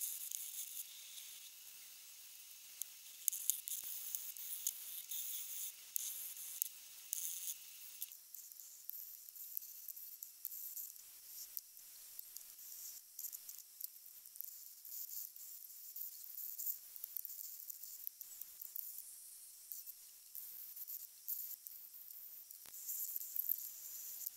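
Faint scratchy hissing of abrasive sanding on a forged carbon fibre swinging arm, coming in irregular strokes.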